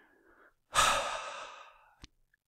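A man's long, breathy exhale into the microphone, a sigh that starts strongly a little under a second in and fades away over about a second.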